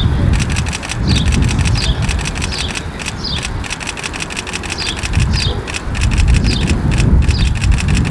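Street sound on a handheld camera's microphone while walking: a low rumble of wind and traffic, with a short high falling chirp repeating about every two-thirds of a second.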